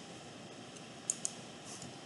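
Two quick clicks of a computer mouse, close together, over faint room hiss; a few fainter ticks follow near the end.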